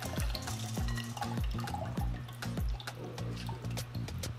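Soaked rice and water pouring from a glass bowl into a blender jar, under background music with a steady thumping beat.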